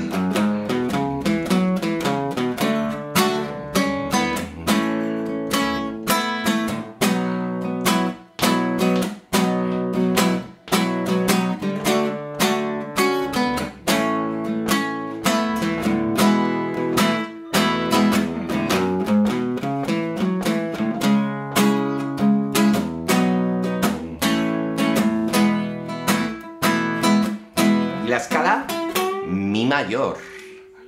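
Nylon-string acoustic guitar strummed in a steady, even rhythm through a chord progression: the song's instrumental section.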